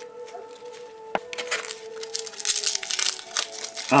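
Dry papery husk (calyx) of a cape gooseberry crinkling and tearing as fingers peel it open, a run of small rustling crackles, busiest in the second half, with one sharp click about a second in.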